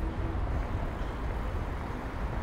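City street background: a steady low rumble of road traffic.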